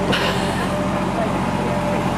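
A steady low engine hum with faint voices in the background.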